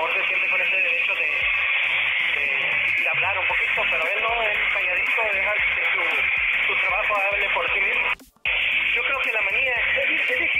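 Indistinct speech heard through a loud, steady hiss, like a poor phone or radio line, with a brief dropout about eight seconds in.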